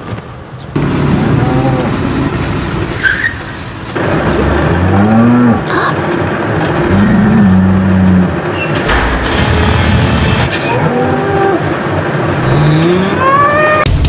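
Film soundtrack of cattle mooing: long, drawn-out moos about four and a half and seven seconds in, more calls later, and rising calls near the end, over a steady noisy background.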